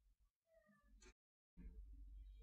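Near silence: faint room hum, with a faint, short pitched sound about half a second in and a brief drop to dead silence just past the middle.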